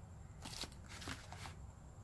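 Faint rustling of paper as a printed instruction manual is handled and opened, its pages turning in a few soft brushes.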